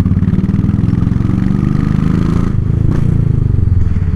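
Royal Enfield Classic 500 single-cylinder engine and exhaust heard from the saddle while riding, its pitch rising over the first couple of seconds as it accelerates, then levelling off. The bike has just been serviced, and the rider says it now runs smooth after heavy vibration from a broken rectifier plate.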